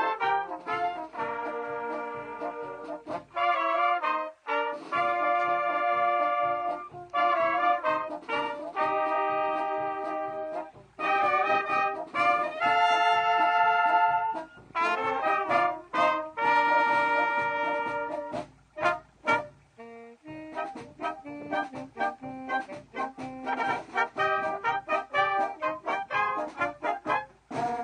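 A small amateur wind band of clarinets, trumpets and French horns playing a tune together, in phrases with short breaks between them.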